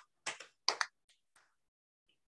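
A few short, sharp clicks in the first second, two of them close together, followed by fainter scattered ticks.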